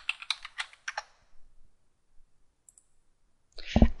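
Computer keyboard keystrokes typing a short word, a quick run of about eight clicks in the first second, then stillness.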